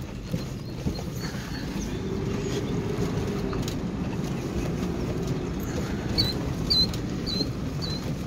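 Vehicle rolling slowly along a gravel road, heard from inside the cab: a steady low rumble of tyres on gravel and the engine, with a few small knocks. In the second half come five short high chirps, about half a second apart.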